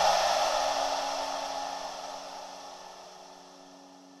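The tail of an electronic background music track fading out: a hiss-like wash over a few held low tones, dying away steadily.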